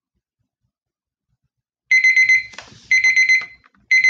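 Electronic countdown timer alarm going off to signal that time is up: bursts of rapid high-pitched beeps, about one burst a second, starting about two seconds in.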